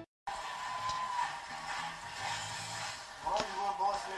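A moment of silence at the cut, then steady room noise with faint, indistinct voices in the background.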